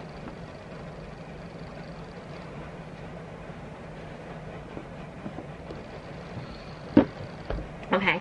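Steady low room noise with a faint hum, broken by a single sharp click about seven seconds in.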